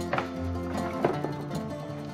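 Background music of plucked strings, a mandolin and guitar tune with a few sharp plucked notes over sustained chords.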